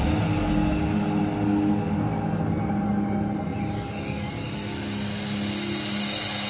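Psychill electronic music: sustained synth pad tones with no beat, the deep bass thinning out in the first second. A swept, whooshing synth effect rises through the upper range from about halfway through.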